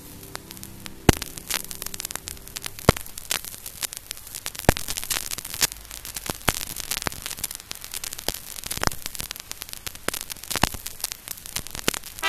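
Vinyl record surface noise in the gap between two songs: steady crackle with scattered sharp pops. The faint last notes of a song die away in the first few seconds.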